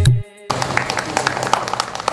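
Band music stops abruptly about a quarter second in, and after a brief gap a small audience starts clapping, separate hand claps rather than a dense roar.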